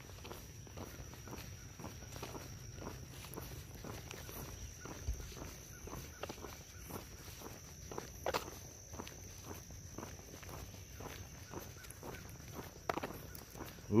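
Faint, steady footsteps of a hiker walking, about two steps a second, going from paved road onto gravel road.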